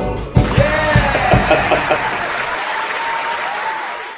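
Applause with cheering voices right after the final guitar strum and percussion hit of a samba-style song, fading near the end.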